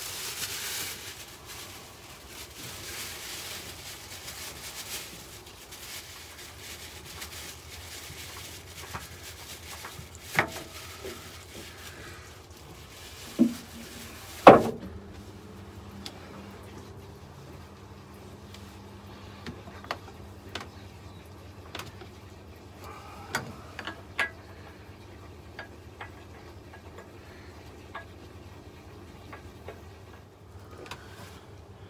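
Scattered knocks and clunks of hands working an engine oil filter loose in a diesel engine bay, with the loudest single knock about halfway through. A low hiss in the first half stops at about the same point.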